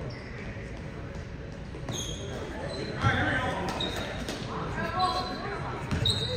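Basketball game sounds in a gym with a reverberant echo: sneakers squeaking on the hardwood floor in short high chirps, a basketball bouncing, and players' voices calling out, mostly in the second half.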